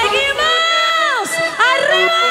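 Live concert sound: a voice holding long calls that rise and fall in pitch, two of them, over band music whose bass drops out about half a second in, with a crowd cheering.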